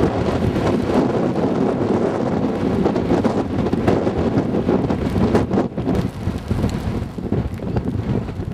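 Strong wind buffeting the camcorder's microphone: a loud, gusting low rumble that the speaker calls terrible.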